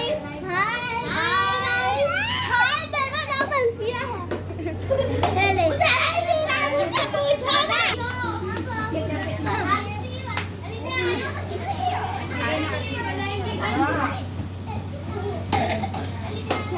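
Several children's and adults' voices chattering and calling out over each other while they play in the lane, with a steady low hum underneath.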